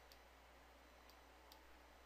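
Near silence broken by about four faint, sharp clicks from a computer keyboard and mouse as a number is typed into a settings field.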